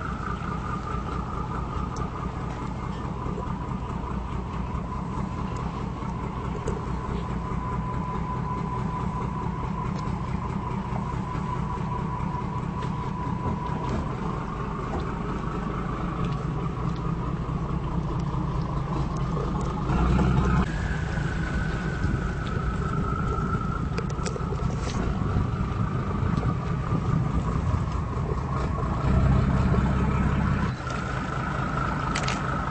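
Engines of a 2003 Luhrs 34 Convertible running at low speed as the boat manoeuvres into its slip: a steady low rumble with a faint whine above it, with two brief louder surges, about two-thirds in and near the end.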